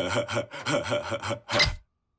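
Cartoon snoring: a rasping, sawing snore in quick strokes, about five a second, ending with one louder stroke before it cuts off suddenly.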